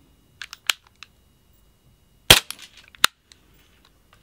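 Western Arms SW1911 gas-blowback airsoft pistol firing one shot through a chronograph: a single sharp crack a little over two seconds in, after a few faint handling clicks. A fainter sharp click follows just under a second later.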